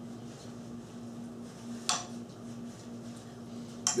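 A spoon clinking against a ceramic plate while eating dessert: one sharp clink about halfway through and another at the very end, over a steady low hum.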